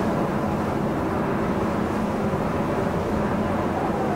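A steady low rumble with no breaks or sudden events.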